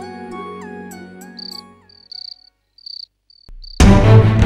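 Soft background music with gliding notes fades away, and crickets chirp in short, high-pitched pulses, about five of them in the second half. Loud music cuts in suddenly near the end.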